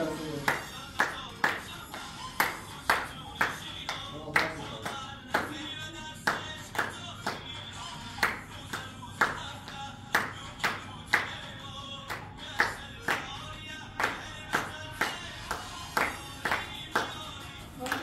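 Several people clapping their hands in a steady rhythm, about two claps a second, in time with music.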